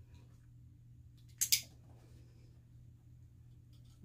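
A dog-training clicker clicking once, a short sharp click about a second and a half in, marking the dog's acceptance of being touched in handling training. A faint steady low hum runs underneath.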